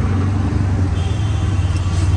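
Auto-rickshaw engine running on the move, a steady low drone mixed with road and traffic noise, heard from inside the open-sided cabin.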